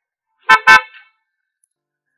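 Mercedes-Benz M-Class SUV's horn, two short honks in quick succession about half a second in.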